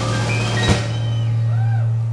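Live jazz trio closing a tune: a long held low note on the electric bass, with a single drum or cymbal hit under a second in.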